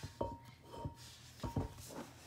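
A metal tumbler being handled and set on a laser rotary's rollers: a few light knocks and clunks, about four, with a brief faint ring after the first and the last of them.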